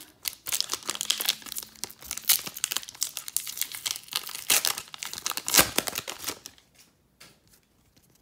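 Foil hockey card pack wrapper crinkling and tearing as it is ripped open by hand. The crackle stops about six and a half seconds in.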